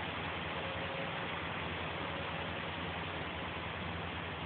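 An engine idling steadily, a constant low hum under an even hiss.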